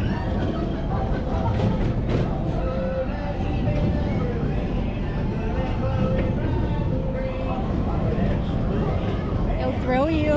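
Country-style ride music with a singing voice playing over a steady low rumble from the moving ride trailer.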